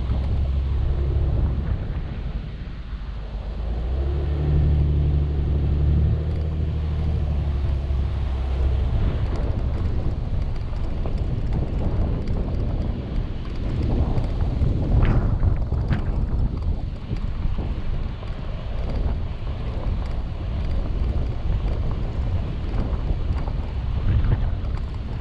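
A vehicle driving up a gravel road: a steady low rumble of engine and tyres, with wind buffeting the microphone. A low engine note stands out for several seconds about four seconds in.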